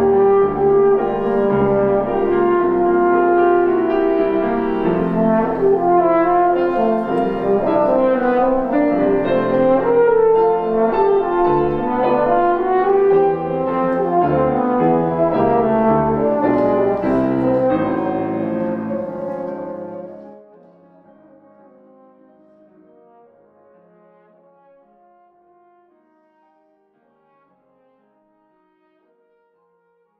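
French horn playing with Yamaha grand piano accompaniment. About twenty seconds in the level drops suddenly to quieter music that fades away near the end.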